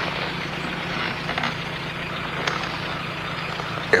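A steady low hum under an even rumbling noise, with a few faint clicks.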